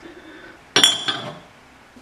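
A single sharp clink of kitchenware about three quarters of a second in, ringing briefly before fading into quiet room tone.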